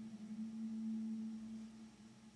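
A steady low hum on one pitch, swelling in the middle and fading near the end.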